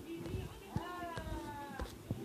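A toddler's drawn-out, high-pitched vocal sound, about a second long, starting a little under a second in, with a few soft knocks around it.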